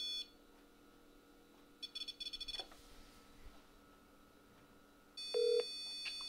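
Electronic tones from a smartphone as a call is placed: a short stutter of beeps about two seconds in, then near the end a brief beep and a steady electronic tone. In between it is nearly silent.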